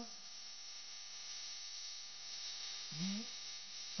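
Steady electrical mains hum with a hiss, and a short faint voice sound about three seconds in.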